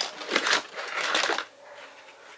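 Rustling and scraping of paper and craft supplies being handled on a work table, swelling twice over about a second and a half, then dying away.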